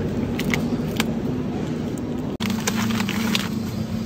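Supermarket shopping trolley rolling along, its wire basket and wheels rattling with scattered light metal clinks, over a steady low hum.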